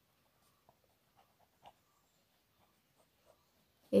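Ballpoint pen writing on paper: faint, short scratching strokes with a few slightly louder ticks.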